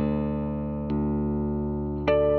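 Danelectro electric guitar playing clean, ringing chords: a chord sustains and is struck again about a second in.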